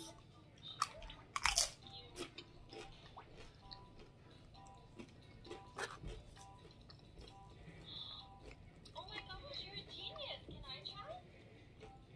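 Tortilla chips being bitten and chewed with spinach dip, loud crunches about a second in, then softer scattered crunching and chewing.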